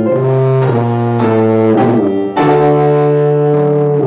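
Tuba playing a slow, legato melody in its low register with piano accompaniment; after a short break just past two seconds in, it holds one long low note.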